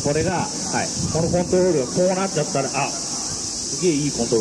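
A steady, high-pitched insect chorus buzzing without a break, under a man talking through a handheld microphone; the voice is the loudest sound.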